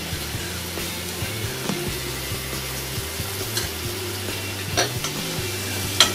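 Brinjal pieces and masala sizzling in oil in a stainless steel kadai, an even steady hiss, with a light clink of the steel slotted spoon against the pan about five seconds in and again near the end.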